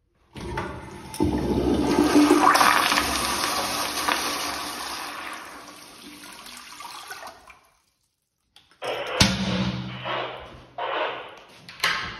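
American Standard Madera flushometer toilet flushing: a loud rush of water that peaks within a couple of seconds and then tapers away over several seconds. After a short silence come a sharp click, uneven knocks and rattles, and another sharp click near the end.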